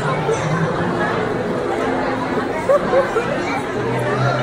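Crowd chatter: many people talking at once in a busy pedestrian street, with two brief louder voices a little under three seconds in.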